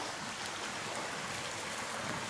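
Steady rushing of running water from a stream, an even hiss with no distinct events.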